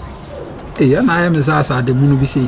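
A person's low voiced vocal sound starting a little under a second in and lasting about a second and a half, with wavering, syllable-like breaks, not in recognisable words.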